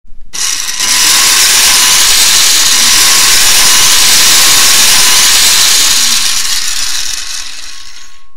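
Loud power-tool sound effect. It comes in abruptly and runs steadily for about eight seconds, easing off a little near the end.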